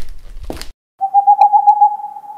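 An owl call: one long, loud, slightly wavering hoot starting about a second in, after a low rumble that cuts off.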